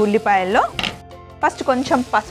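A woman speaking in short phrases, with a brief knock a little under halfway through.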